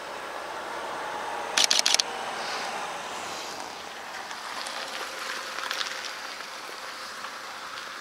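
A camera shutter firing a quick burst of about four clicks about a second and a half in, with a few fainter clicks later, over steady outdoor background noise.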